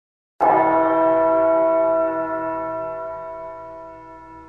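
A bell struck once, about half a second in, then ringing on with several steady overtones that slowly fade away.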